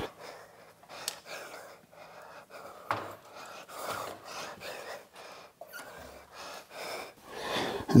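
A few faint clicks and creaks from a hydraulic engine hoist and its chain as an engine is let down on it, with a man breathing close by.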